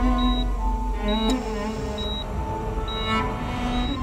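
A hospital heart monitor beeps steadily, about once a second, with a short high beep each time. Underneath it runs slow background music made of long held notes.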